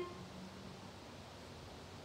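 Quiet room tone: a faint, steady hiss with a low hum and no distinct events, after the tail of a woman's spoken word at the very start.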